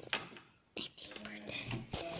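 A faint, murmured voice starting about three-quarters of a second in, after a click and a short hush.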